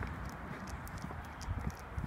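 Faint footsteps of a person walking on a tarmac lane, a few soft steps about a second and a half in, over a low steady rumble.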